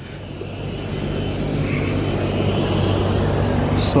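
A low, steady engine hum that swells over the first second or two and then holds steady, from a motor vehicle or aircraft running nearby.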